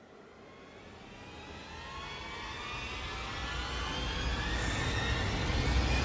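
An edited-in riser sound effect: a whooshing, jet-like noise that climbs steadily in pitch and grows louder for about six seconds, with a low rumble building underneath.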